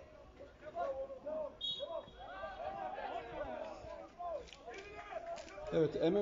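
Several voices shouting and calling out over one another across a football ground after a challenge between players, with a short, high referee's whistle blast about one and a half seconds in, blown for a foul.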